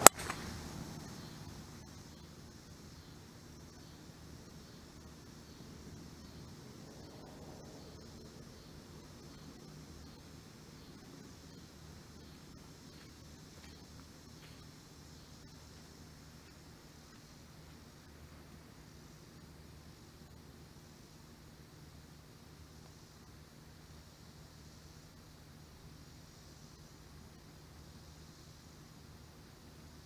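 A golf club striking a ball in a full swing: one sharp crack right at the start, the loudest sound by far, with a short ring after it. Then only quiet open-air background with a faint steady low hum.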